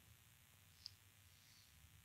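Near silence: faint room tone in a pause of speech, with one short, faint click a little under a second in.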